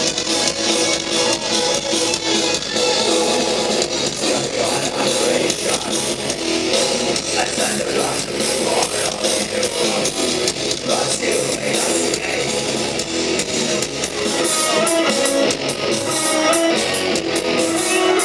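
A rock band playing live and loud, with electric guitars, bass guitar and drums, heard from the audience; the drum strokes stand out more sharply in the last few seconds.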